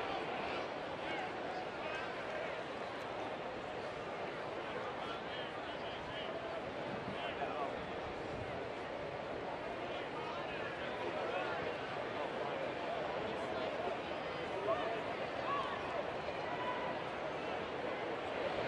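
Ballpark crowd chatter: a steady hum of many voices from the stands, with no single sound standing out.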